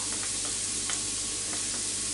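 Diced bacon, onion and garlic sizzling steadily in butter in a frying pan, stirred with a wooden spoon, with a light click about a second in.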